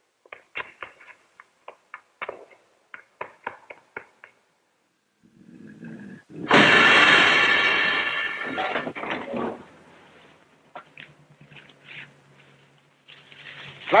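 A woman's quick footsteps clicking on pavement for about four seconds, then stopping. A low rumble swells, and at about six and a half seconds the air brakes of a city bus let out a sudden loud hiss that fades over a few seconds, leaving the bus engine idling.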